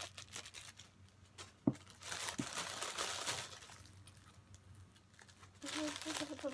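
Thin plastic packaging bag crinkling as it is handled, mostly from about two to three and a half seconds in. A single sharp knock comes just before the crinkling.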